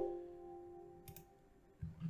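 Computer warning chime: a few held tones sounding together and fading over about a second, the alert for a confirmation dialog. A single mouse click follows about a second in.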